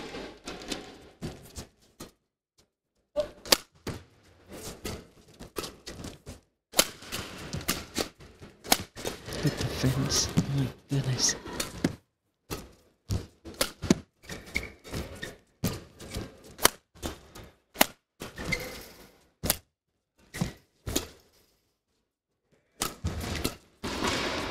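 Badminton rackets striking a shuttlecock in a fast rally: a string of sharp hits at uneven intervals, broken by a few stretches where the sound drops out altogether.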